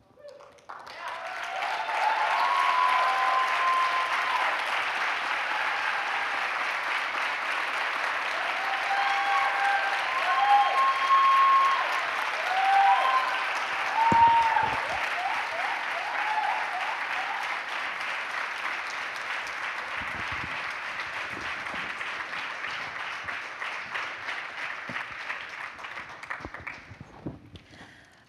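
A live audience applauding for over twenty seconds, with scattered cheers and whoops in the first half. It starts about a second in, swells quickly, and slowly dies away near the end.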